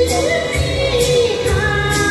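Two women singing a Chinese song into microphones, a long held note that bends up and back down, over backing music with a steady beat of light percussion strokes about twice a second.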